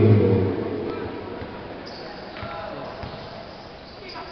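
Basketball game in a gym: a man's loud chanting voice trails off in the first half second. Then comes the steady murmur of the crowd in the hall, with faint, scattered thuds of the ball bouncing on the court.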